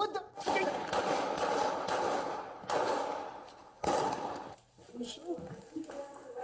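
Gunfire picked up by a police body camera: a rapid volley of shots starts about half a second in, and two more bursts follow near the middle. Each one dies away over about a second.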